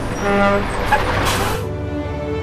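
Soundtrack music with a truck passing by: a rush of noise swells about a second in and cuts off suddenly.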